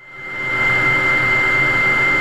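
Steady motor noise: an even high whine over a low hum, fading in over the first half-second and then holding level.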